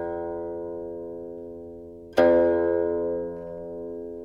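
Guqin (seven-string Chinese zither) being plucked: a long note rings and slowly dies away, then a loud new pluck a little over two seconds in rings on and fades.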